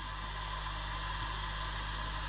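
Steady low hum with a faint even hiss and no distinct sounds: background room tone.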